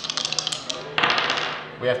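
Two plastic ten-sided dice clattering on a wooden tabletop: a fast run of sharp clicks, then a rougher rattle about a second in that dies away.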